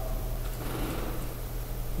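A pause in a lecture: steady background hiss and a low hum in the room or recording chain, with no distinct event.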